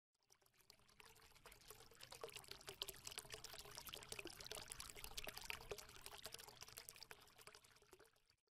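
Faint sound effect under a logo intro: a dense patter of tiny clicks over a hiss, a little like liquid being poured. It builds over the first couple of seconds and dies away near the end.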